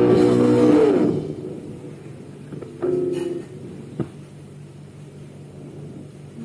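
Rock band recording: loud electric guitar chords slide down in pitch about a second in and die away. A single short chord follows near the middle, then a sharp click, over a quiet held low note.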